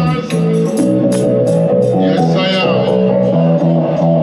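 Dub music played loud through a sound system: the deep bass drops out just after the start, leaving sustained chords with hi-hat ticks that fade away, and a short gliding pitched line around the middle.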